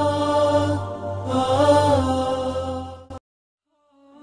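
Background music of sustained, chant-like vocals with slow pitch glides over a low steady drone, cutting off abruptly about three seconds in.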